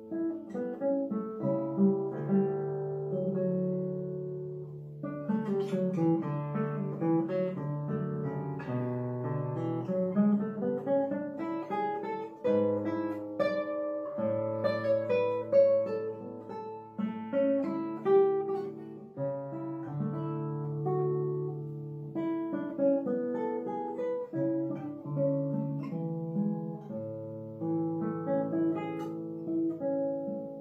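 Solo classical guitar with nylon strings, played fingerstyle: a continuous passage of plucked melody notes over moving bass notes and chords.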